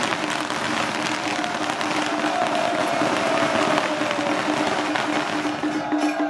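A string of firecrackers crackling continuously in a dense, rapid rattle. Under it run a steady low tone and a pitched sound that slowly falls from about two seconds in.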